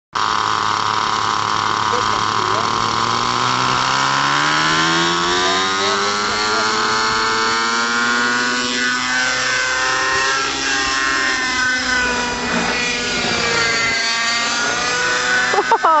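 Thunder Tiger Raptor 50 RC helicopter's nitro glow engine and rotors spooling up: the pitch climbs steadily over the first few seconds, then settles into a high, steady whine that wavers up and down as the helicopter lifts off and flies. A short "Oh" near the end.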